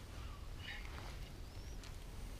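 Faint low rumble with little else, and a short, high rising chirp near the end.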